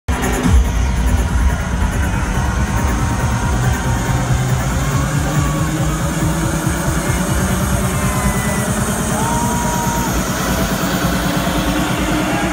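Bass-heavy electronic dance music from a DJ set, played loud through line-array PA speakers.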